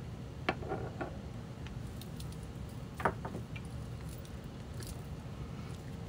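Soft handling of paper and craft supplies on a table: a sharp click about half a second in and another knock about three seconds in, with light rustling, over a low steady room hum.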